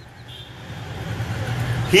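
A low, steady mechanical hum that slowly grows louder, with a brief faint high tone shortly after it begins.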